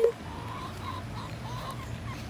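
Backyard hens making soft, drawn-out wavering clucks, over a steady low hum.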